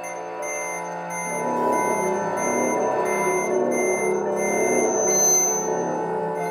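Free improvised music: sustained, overlapping pedal steel guitar tones layered with electronics, with a short high beep repeating about twice a second. The texture thickens and grows louder about a second in.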